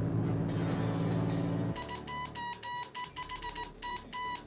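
A steady low drone, then, from about two seconds in, Morse code beeps: a single high tone keyed on and off in short and long pulses, dots and dashes.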